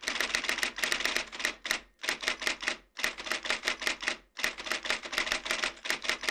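Typewriter typing sound effect: rapid keystroke clicks in four runs with short pauses between them, in time with a caption being typed out letter by letter.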